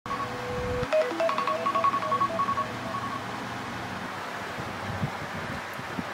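Electronic beeps: one held tone for just under a second, then a quick run of short beeps at two or three pitches for about two seconds, then only a steady low background.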